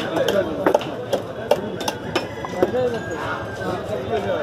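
Hilsa fish being cut on a curved upright blade (boti): sharp, irregular cutting knocks, roughly two a second, over a babble of voices.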